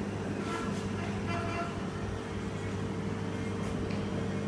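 Steady low electrical hum of an aquarium pump running, with a light even hiss over it.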